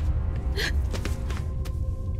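A person's sharp, breathy gasp about half a second in, as of someone stumbling weakly, followed by a few faint knocks. Underneath runs a low, steady music drone, and a held tone enters about a second in.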